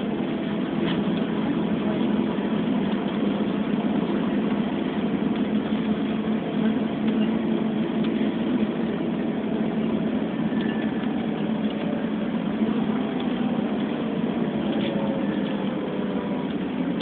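Steady road and engine noise heard from inside a moving vehicle at road speed, an even rumble without breaks.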